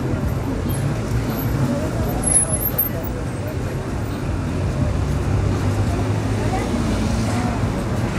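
Street traffic noise: a steady low hum of car engines on the road, with people talking indistinctly in the background.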